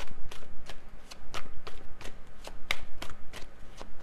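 A deck of tarot cards being shuffled by hand: crisp, irregular slaps and flicks of cards, about three or four a second.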